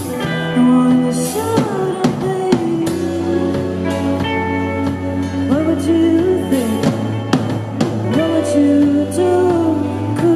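Live rock band playing a song: a woman singing lead over electric guitars, bass, keyboard and a drum kit.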